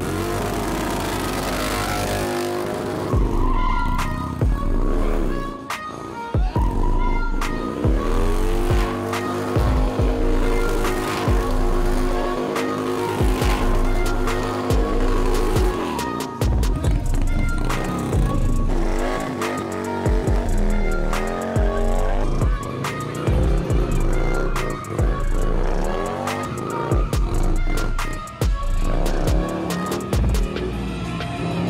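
Music with a heavy, steady beat laid over a bagger motorcycle's engine revving up and down repeatedly during a smoky tyre burnout.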